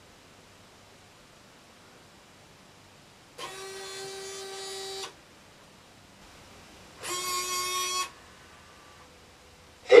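Robot servo motors whining in two spells as the robot moves: a steady-pitched whine lasting under two seconds a few seconds in, then a slightly lower, louder one of about a second.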